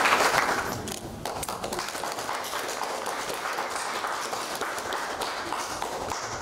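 Audience applause, loudest at the start and dying down about a second in, then lighter scattered clapping.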